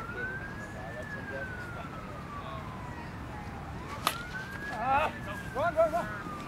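A siren wailing in slow rise-and-fall sweeps, a little under two cycles. About four seconds in comes one sharp crack of a plastic wiffleball bat hitting the ball, followed by short shouts.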